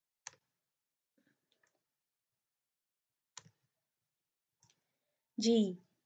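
Computer mouse clicking: two sharp clicks about three seconds apart, with a few faint ticks between, against near silence. A woman says one short word near the end.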